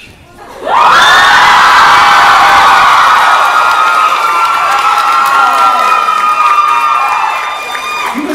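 A large audience in a hall breaks into loud cheering and screaming about a second in, many high voices held for several seconds, easing off near the end.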